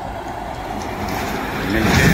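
Tractor-trailer truck driving past on the road close by, its engine and tyre noise growing louder toward the end.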